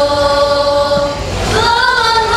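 Women's qasidah group singing together in unison. They hold one long note for about the first second, then start a new phrase that rises in pitch.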